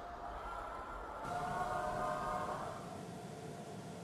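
Faint whirring of a track bicycle riding on the velodrome boards, swelling about a second in and fading again before the end.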